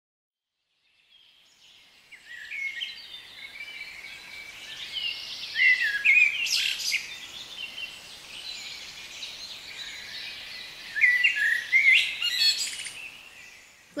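Birdsong: several birds chirping and calling over a light hiss, fading in about a second in, with louder bursts of calls around the middle and again near the end.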